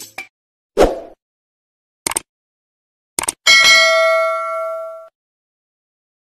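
Subscribe-button animation sound effect: a short thump, then two quick double clicks, then a notification bell ding that rings and fades over about a second and a half.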